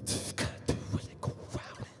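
Vocal percussion into a stage microphone: short popping beatbox syllables like "put to put", about three a second, growing fainter toward the end.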